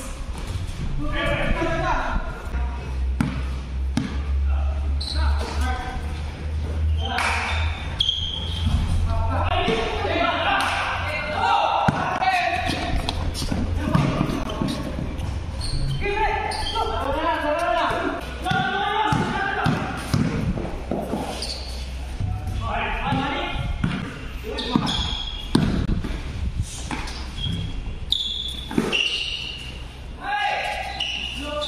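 A basketball being dribbled and bouncing on a hard court, with many sharp impacts, while players shout and call to one another. The roofed court gives it all an echo, over a steady low hum.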